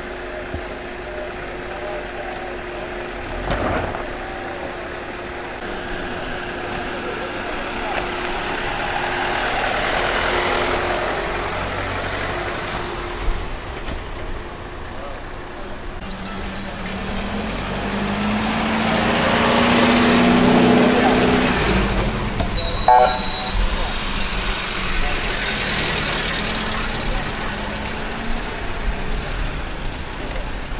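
Ambulances and other vehicles driving slowly past, their engine and tyre noise swelling and fading twice, louder the second time, with the voices of a crowd in the background.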